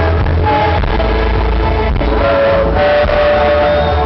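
A live band playing loud and steady: acoustic guitar strumming over a heavy bass, with long held pitched notes through the middle.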